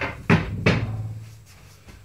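Two sharp wooden knocks about half a second apart, with a short ringing tail, as wooden stool and table parts are handled and set down.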